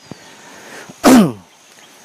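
A man gives one short, loud, explosive vocal burst about a second in, sharp at its start and falling in pitch as it dies away, the kind of sound a sneeze or hard cough makes.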